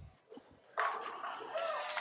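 Bowling ball striking the pins for a strike about a second in, the ten pins crashing and scattering in the pit, followed at once by spectators cheering and shouting.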